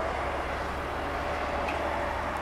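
Škoda 706 RTTN tractor unit's diesel engine running as it drives, a steady low drone with road noise.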